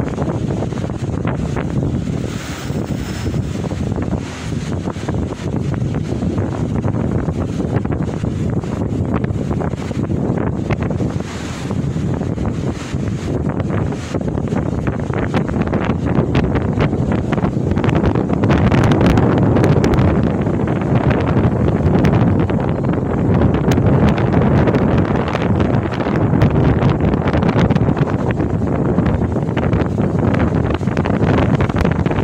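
Strong wind buffeting the microphone, a dense low rumble with crackle that grows louder about halfway through, over the wash of choppy sea breaking below the promenade wall.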